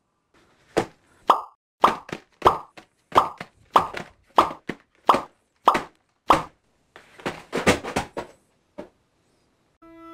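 Small cardboard product boxes being set down one after another onto a larger cardboard box. About fifteen short hollow knocks come roughly two a second, a little quicker near the end.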